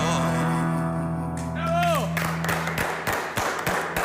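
A final chord on a nylon-string acoustic guitar rings out as the song ends, with a sung note that slides down and stops about two seconds in. Then come scattered sharp claps.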